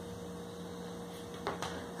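Steady low electrical hum with room hiss, broken by two faint light knocks close together about a second and a half in.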